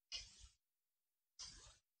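Near silence, with two faint, brief soft sounds, one just after the start and one near the end.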